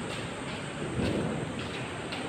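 Steady noisy background ambience with no single clear sound, swelling slightly about a second in.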